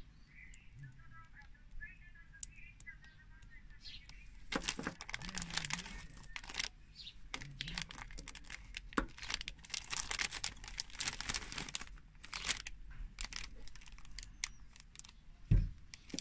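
Small plastic Lego bricks being handled and pressed together, a run of light clicks and snaps that becomes busier after about four seconds, with crinkling of the plastic parts bag.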